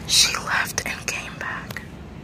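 A person whispering close to the microphone, breathy and hushed, with a few sharp clicks among the words.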